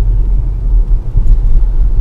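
Steady low rumble of a car's road and engine noise heard inside the moving car's cabin.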